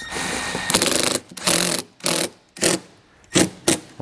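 Milwaukee cordless impact driver running a self-tapping button-head screw into sheet metal. It hammers continuously for about a second, then fires a few short bursts as the screw is snugged down.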